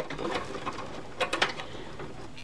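Hands handling bundled power-supply cables inside a desktop PC's metal case: rustling with a few sharp clicks, two close together a little over a second in.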